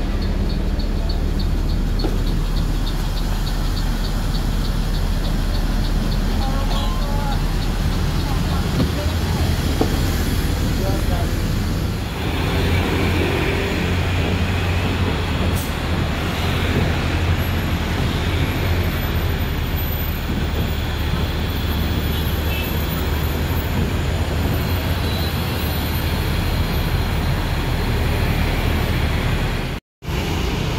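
City bus diesel engine running, heard first from inside the cabin with a rapid ticking over it for the first few seconds. About twelve seconds in, the sound changes to a Mercedes-Benz Transjakarta bus's engine heard from the roadside, with street traffic around it.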